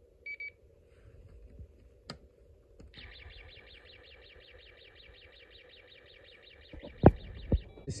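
Snap Circuits kit speaker: a short electronic beep from the recording IC, a click, then the space-war sound effect, an electronic tone pulsing about seven times a second for about five seconds. Two loud thumps come near the end.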